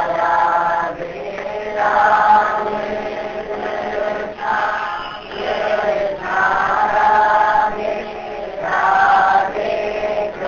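Devotional chanting of a mantra: voices singing short melodic phrases of about a second each, one after another with brief dips between.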